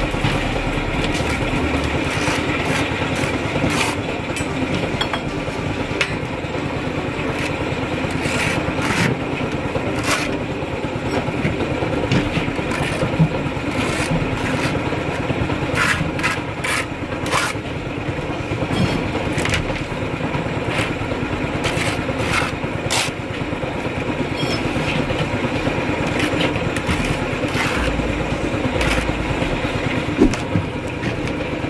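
Steel trowel scraping mortar and knocking on clay bricks as they are laid, with short sharp taps scattered through, over the steady drone of an engine running throughout.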